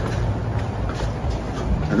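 A steady low rumble of outdoor background noise, with no speech.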